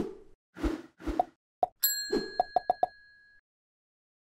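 Animated end-screen sound effects: three soft swishing pops, then a bright bell-like ding about two seconds in that rings on for over a second, with a quick run of four small pops under it.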